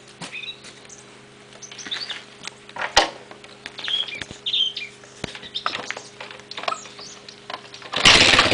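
Small birds chirping, with a few sharp clicks and knocks, the loudest about three seconds in, while the engine is still off. Right at the very end the Suzuki DR250S's single-cylinder four-stroke fires on the first kick from cold.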